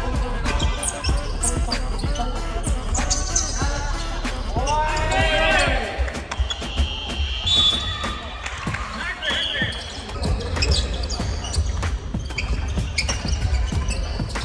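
A basketball bounces repeatedly on a hardwood gym floor during play, with players' voices calling out, loudest about five seconds in. Brief high-pitched squeals come in the middle.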